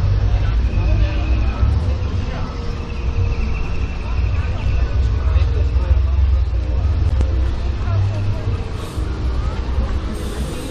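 Outdoor crowd ambience picked up by a walking camera: a steady low rumble on the microphone with faint voices of passers-by, and a faint high tone coming and going.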